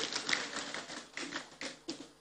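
Audience applauding, the clapping thinning out into scattered claps and dying away near the end.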